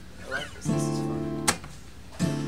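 An acoustic guitar chord strummed about a second in and left ringing for under a second, then cut off by a sharp click.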